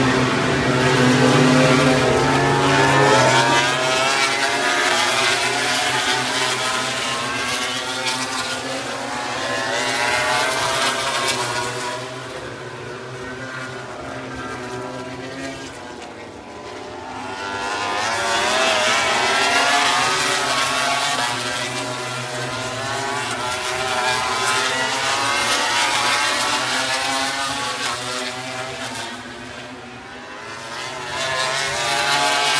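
MotoGP racing motorcycles running at high revs on the circuit, several engines at once with their pitch rising and falling as they pass. The sound is louder in the first dozen seconds, drops away for a few seconds around the middle, then builds again as more bikes come through.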